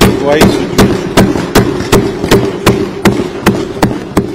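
Assembly members thumping their desks in unison, a steady beat of about two and a half thumps a second, with voices underneath: the customary show of approval for a budget announcement.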